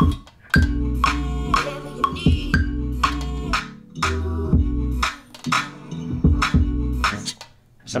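Chopped sample played back from an Ableton Push 3 through studio monitors: short musical phrases over a deep low end. Each phrase starts sharply and stops abruptly, with brief gaps about half a second in, past the middle and near the end.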